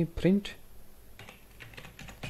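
Computer keyboard typing: a few light, quick keystrokes in the second half.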